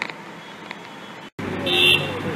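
Low background noise that cuts off abruptly and gives way to louder outdoor noise, with a short, shrill toot near the end.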